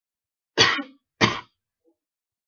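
A person coughing twice, two short sharp coughs about half a second apart.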